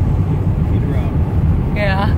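Steady low rumble of a pickup truck's engine and tyres heard from inside the cab while cruising on a highway.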